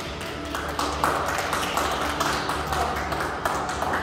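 A few people clapping by hand in a reverberant room, irregular claps several times a second, with some voices.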